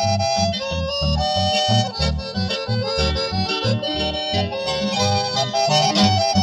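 Instrumental Paraguayan polka from a folk conjunto: accordion playing a lively melody over a bass that pulses several times a second.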